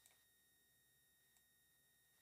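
Near silence: room tone with only a faint, steady high-pitched tone.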